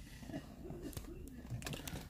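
A man's quiet, low voice murmuring under his breath, with a few faint clicks about a second in and again near the end.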